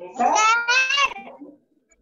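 A man's voice drawing out a high-pitched vowel sound in two held pulses, sounding almost like a meow.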